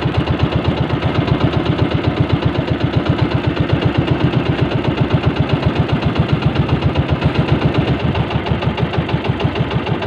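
Motorized outrigger boat's engine running at a steady speed, its exhaust beating in a fast, even rhythm.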